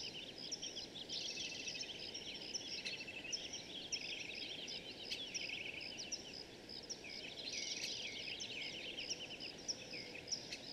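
Several birds chirping and trilling at once, in quick overlapping calls, over a steady low background hum.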